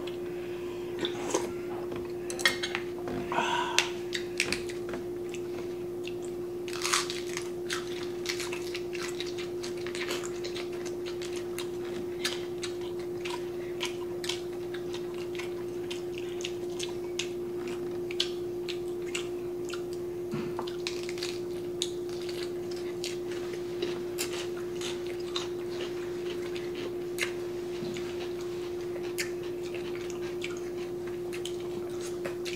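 Close-miked mealtime eating sounds: chewing and mouth clicks as two people eat bulgogi and lettuce wraps, with spoons and chopsticks tapping on bowls and a metal pan. Many short clicks and taps, busiest in the first few seconds, over a steady low hum.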